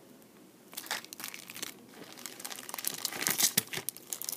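Crinkling of clear plastic sticker sleeves and bags being handled, starting about a second in and getting busier toward the end.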